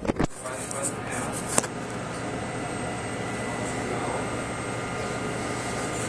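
A few quick knocks near the start, then a steady machine hum with thin high whines running evenly, the kind of sound a ventilation fan or similar motor makes.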